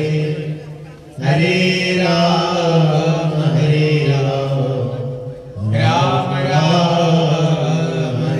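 Devotional chanting: a voice intoning long, held phrases with slow bends in pitch. It pauses briefly about a second in and again around five and a half seconds.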